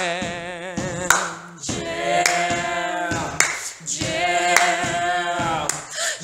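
Song: several voices sing a drawn-out, wavering chorus in phrases of about two seconds, over a beat with sharp hits between the phrases.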